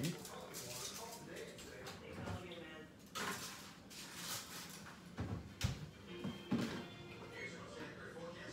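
Faint voices and music in the background, with two sharp knocks a little past the middle.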